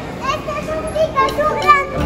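A young girl's voice talking in short, high-pitched phrases.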